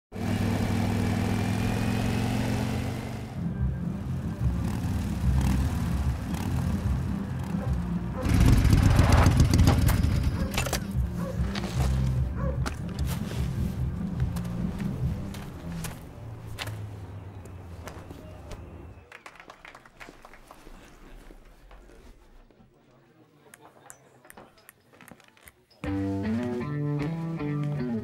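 A cruiser motorcycle engine running, surging loudly about eight seconds in and then fading away, followed by a quiet stretch with a few clicks. About two seconds before the end, a blues-rock electric guitar riff starts.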